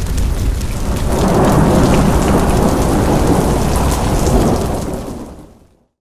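Thunderstorm sound effect: heavy rain with rolling thunder, swelling about a second in and fading out to silence near the end.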